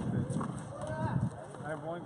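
Men's voices shouting during a fast handball rally: a long, low call in the first second, then several short calls that bend in pitch.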